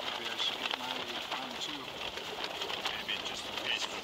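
Small remote-canister gas camping stove burning under a lidded pot: a steady hiss with frequent crackling and ticking as the water heats.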